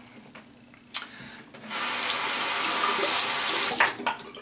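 Bathroom sink tap running into the basin for about two seconds, then shut off just before the end, after a click about a second in.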